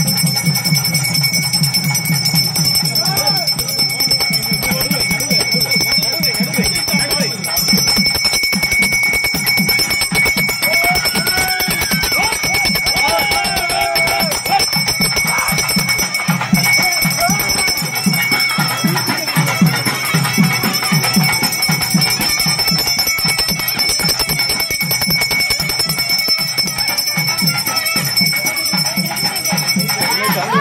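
Festival procession music: fast, steady drumming under a constant high ringing tone, with voices rising over it in the middle stretch.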